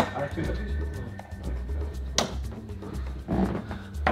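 Background music with a steady bass beat and low voices, with two sharp thuds about two seconds apart: darts landing in a bristle dartboard.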